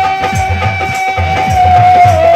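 Instrumental passage of Bihari Bhagait folk music: a wind instrument played at the mouth holds one long melody note that wavers near the end, over regular dholak drum beats.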